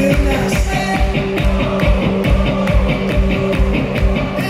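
Live amplified rock music in an instrumental passage: strummed acoustic guitar chords over a steady beat of about two kicks a second.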